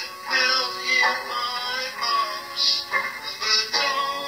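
A pop song: a solo vocalist singing held, bending notes into a microphone over backing music, with sharp "s" sounds between phrases.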